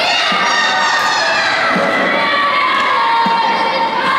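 A group of children shouting and cheering together, many high voices overlapping, with a low thud about every second and a half.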